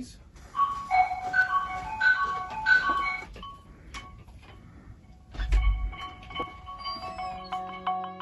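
Tuned mallet percussion played for a soundcheck, heard over control-room monitors: a short run of ringing struck notes starting about half a second in, a lull, a low thump, then denser, overlapping notes through the second half.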